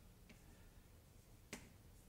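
Near silence of room tone, broken by one sharp click about one and a half seconds in.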